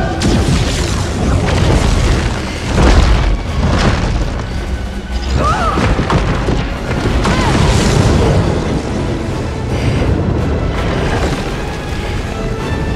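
Film sound effects of energy blasts and crashing impacts, a run of heavy booms with the loudest about three seconds in, over a film music score.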